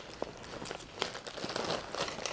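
A clear plastic zip bag crinkling as it is stuffed into a fabric backpack pocket, with the backpack rustling and a few faint ticks.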